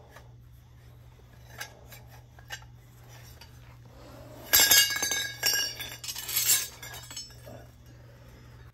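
Short lengths of copper pipe clinking and ringing against each other and the concrete as they are handled and set down, a loud cluster of clinks about halfway through after a couple of small taps, over a low steady hum.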